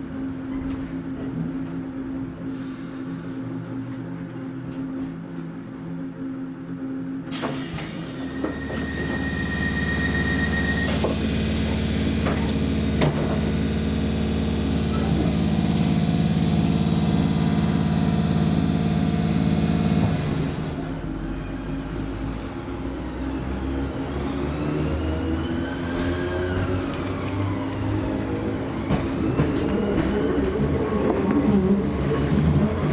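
Class 317 electric multiple unit heard from inside the carriage as it moves off along the platform. A steady hum gives way, after a sharp knock about seven seconds in, to a louder drone with a short beeping tone. The drone eases after about twenty seconds, and rising and falling squeals come in near the end.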